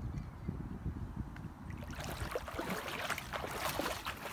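Wind rumbling on the microphone, joined about halfway through by a close, crackling rustle.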